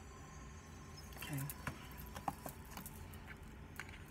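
Oracle cards being handled on a cloth-covered table: a card drawn from a deck and laid down, with a few faint light clicks and taps over a low steady room hum.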